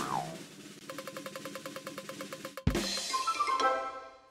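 Wheel-spin sound effect: a short swish, then a fast, even drum-roll run of ticks from about a second in. A sharp hit comes near the three-second mark, followed by a brief rising chime as the wheel lands.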